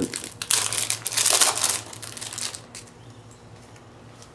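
Clear plastic packaging of a baseball card pack crinkling as hands handle it and open it, loudest in the first two seconds and dying down after that.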